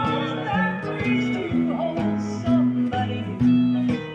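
Nylon-string acoustic guitar fingerpicked as a country-style accompaniment: bass notes that step between pitches under plucked chords, about two strokes a second.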